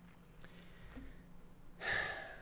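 A pause with a faint steady hum, then near the end a man's quick, audible intake of breath.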